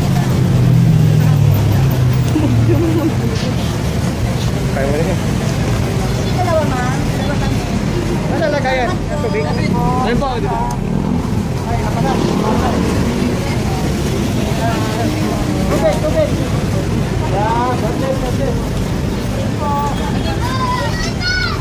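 Several people talking over a steady rumble of street traffic, with a vehicle engine running loudest in the first few seconds.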